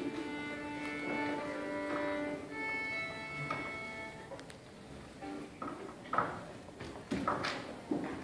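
Violin and cello tuning: held open-string notes sounding together for about the first four seconds, then quieter with a few short string sounds and knocks before the playing begins.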